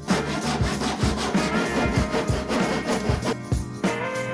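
A hand tool worked in quick repeated strokes along the edges of plywood hull panels, chamfering them, about two to three strokes a second. Background music plays underneath.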